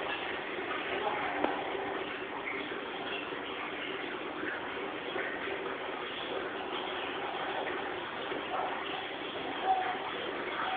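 Steady rushing hiss of aquarium water and air bubbles, with faint indistinct voices in the background.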